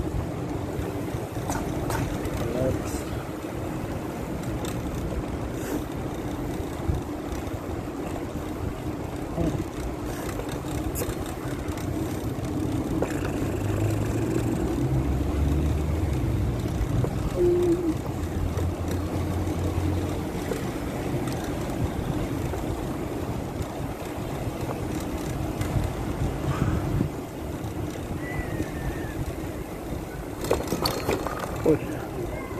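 Steady wind rush over the microphone with tyre rumble from a bicycle rolling along a paved path. A low hum comes in for a few seconds in the middle.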